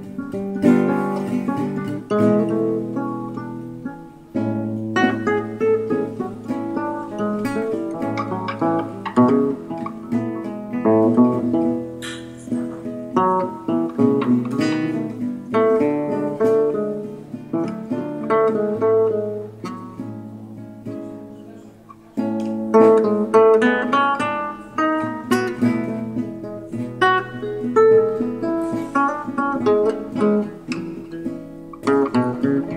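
Acoustic guitar music, plucked notes and strummed chords, with a brief pause about four seconds in and a louder passage starting about two-thirds of the way through.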